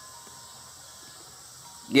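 A pause in speech: faint steady outdoor background noise, with a man's voice starting again at the very end.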